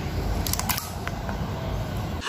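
Low steady handling rumble on the phone's microphone, with a few light sharp clicks about half a second in from small plastic toy cars being handled on a tiled ledge.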